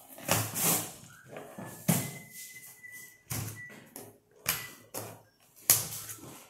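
Packing tape being picked at and peeled off a cardboard box by hand, in a string of short, scratchy rips and scrapes; the loudest is near the end.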